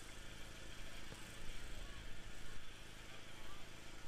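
Faint, steady low hum over quiet outdoor background noise.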